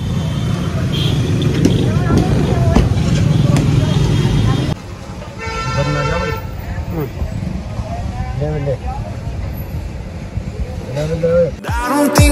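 A vehicle horn honks once for about a second, about five seconds in, over street noise. Before it, a steady low rumble cuts off suddenly.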